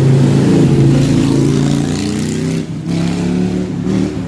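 A car engine accelerating past on the road, with a steady engine note that is loudest in the first two seconds and then fades with a slight drop in pitch.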